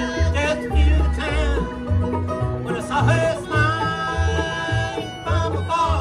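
Bluegrass band playing an instrumental passage on acoustic instruments: banjo picking, fiddle, dobro, mandolin and acoustic guitar over an upright bass pulsing on about two notes a second.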